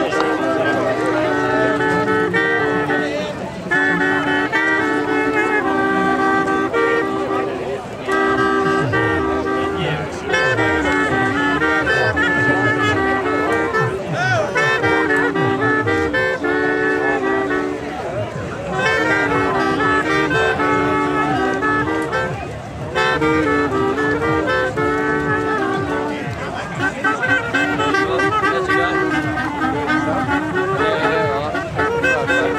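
A small ensemble playing a melody together on home-made wind instruments made from bicycle seat posts fitted with mouthpieces. The tune comes in phrases of clear, steady notes in several parts, with short breaks between phrases.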